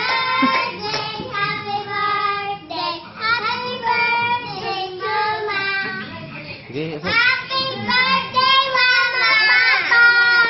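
Young girls singing a song together in high children's voices, with some long held notes.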